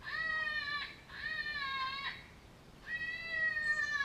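A predator call sounding a drawn-out, wailing animal distress cry, used as a lure in coyote hunting. There are three near-identical cries of about a second each, with short breaks between them.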